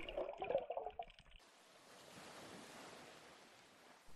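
Faint underwater water noise: a soft watery sound in the first second, then a low steady hiss that stops near the end.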